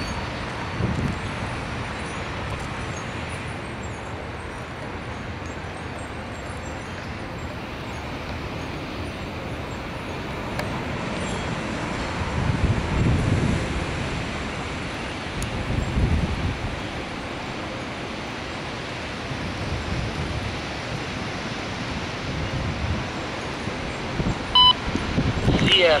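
Gondola cars of a freight rail train rolling past on jointed track: a steady rumble and rattle of steel wheels on rail, with a few low heavy thumps partway through. A radio voice from a trackside defect detector starts at the very end.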